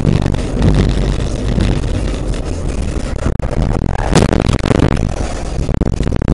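Dashcam audio of a car on the road: loud, rough road and engine noise, with a sharp bang about four seconds in and a burst of rattling clicks near the end.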